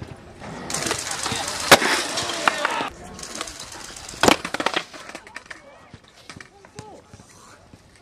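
Skateboard wheels rolling on concrete, then a sharp crack of the board less than two seconds in. A second roll follows and ends in a loud smack of the board on the ground about four seconds in, with a few lighter clatters after.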